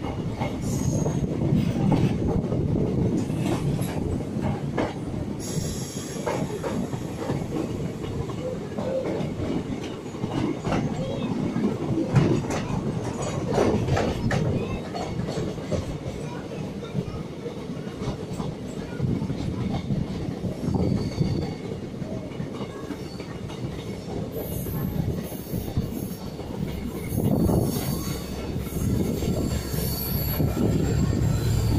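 Moving DEMU passenger train heard from inside the coach: a steady rumble of wheels on rail, with frequent clicks as the wheels pass over rail joints and points, and a thin high wheel squeal toward the end.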